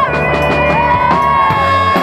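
Live rock band: a young woman's lead vocal sings a short phrase, then holds one long steady note from just under a second in, over electric bass guitar and a steady beat.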